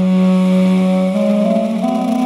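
Meditative background music: a duduk melody held over a steady drone, with the melody stepping up in pitch twice.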